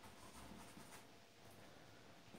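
Faint rubbing of a paintbrush laying oil paint onto a canvas, barely above near silence.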